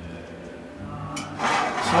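A faint low steady hum for about the first second, then a man's voice starts speaking.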